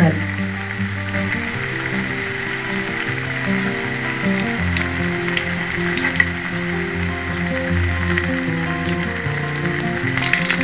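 Battered cauliflower pakoda deep-frying in hot oil in a kadai, a steady sizzle, under background music with a line of held low notes. One brief tap about six seconds in.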